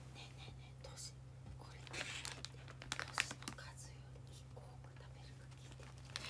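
Faint crinkling and rustling of a plastic packet being handled, in short bursts that cluster about two to three and a half seconds in, over a steady low hum.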